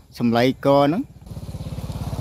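A small engine running with a rapid, even putter, coming in about a second in and growing louder.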